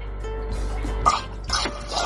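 Liquor poured from a bottle into a glass over ice, trickling in short spells about a second in and again near the end, under background music.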